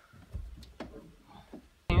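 Quiet guitar music, a few plucked notes that die away, under a scene change.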